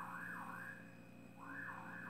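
Faint, distant electronic alarm: a tone swooping up and down about three times a second, breaking off shortly before the middle and starting again.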